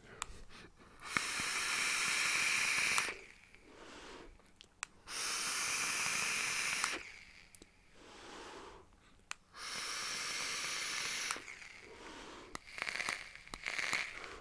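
Three long draws, about two seconds each, on a Smok TF tank fired at 100 watts: a steady hiss of air pulled through the tank over the firing coil, each draw followed by a softer, shorter exhale. Sharp clicks mark the start and end of the draws.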